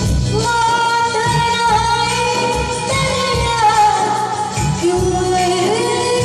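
A woman sings a Hindi song live into a microphone, backed by a band on drums, keyboard and electric guitar. Her voice comes in about half a second in with long held notes that slide down at their ends, over a steady beat.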